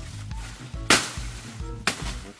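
Background music with a steady bass line, cut through by two sharp machete chops into plantain stalk and leaf litter, about a second apart.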